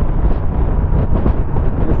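Steady wind rush on the onboard microphone at highway speed, about 100 km/h, over the low running noise of the Moto Guzzi V100 Mandello's transverse V-twin and its tyres on the road.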